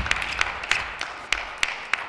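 Spectators applauding after a table tennis point, with sharp individual hand claps standing out above the crowd's general clapping.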